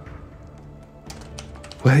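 A few keystrokes on a computer keyboard, bunched about a second in, over faint steady background music.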